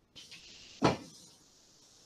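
A felt whiteboard eraser rubbing across a whiteboard, a steady scratchy swishing, with one loud knock a little under a second in.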